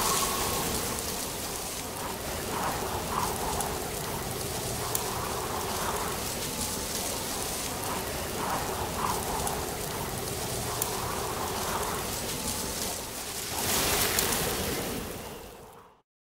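Steady rain-like hiss from a soundtrack, with a few faint tones in it. It swells briefly near the end, then fades out to silence.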